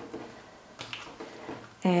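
Tarot cards being handled and cut by hand: a scatter of light taps and slides of the cards against each other and the cloth-covered table.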